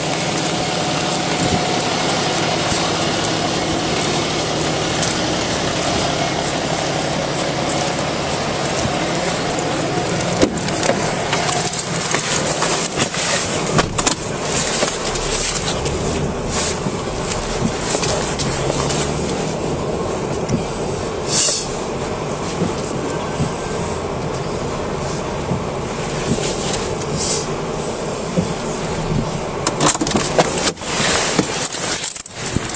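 Steady rushing of wind and falling snow on a body-worn camera's microphone, with clothing rustle, while walking to a patrol car in a snowstorm. About halfway through the rush softens to the steady hiss of the car's cabin with a low hum underneath. There are a few sharp knocks and clicks around the middle and near the end.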